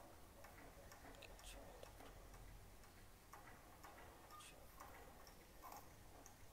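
Near silence: room tone with a low hum and a few faint, irregular clicks.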